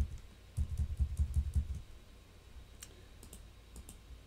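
Computer keyboard being typed on: a quick run of about eight dull thuds, then a few light clicks near the end.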